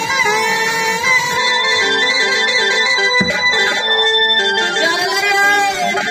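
Live folk stage music: a voice holding long, slightly wavering sung notes over a reed-keyboard accompaniment playing short stepped notes, typical of harmonium.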